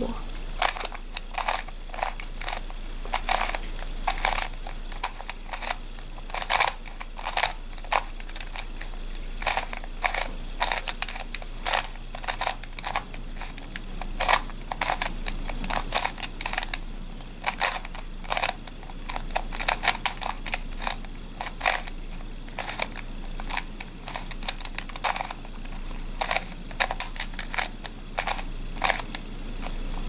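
Plastic face-turning octahedron twisty puzzle being turned by hand: a string of sharp, irregular clicks and clacks as its layers are twisted and snap into place. The rapid repeated turns of the r U r' U' sequence swap two center pieces.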